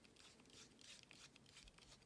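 Near silence, with faint scraping and ticking as the sensor's threaded end cap is unscrewed by hand.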